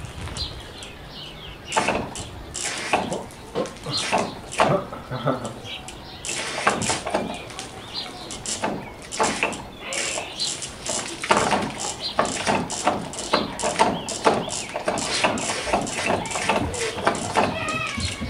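Homemade dancing water speaker's driver crackling and popping irregularly, with fragments of its song breaking through: the speaker has blown.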